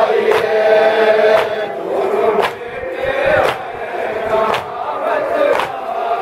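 Crowd of men chanting a noha, the Shia lament, in unison, a long drawn-out melodic line, over sharp strikes about once a second that keep the beat, typical of matam: hands beating on chests.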